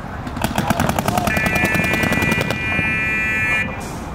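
Paintball markers firing in rapid streams, more than ten shots a second, for about two seconds. Partway through, a steady high-pitched horn tone starts and holds for about two seconds, typical of the signal that ends a point.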